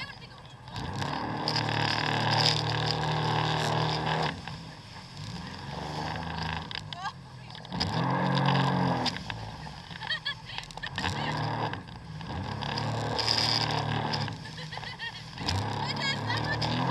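Jet ski engine running at speed, its low note swelling and easing off in several surges, some rising in pitch as the throttle opens. Under it runs a steady rush of wind and water spray.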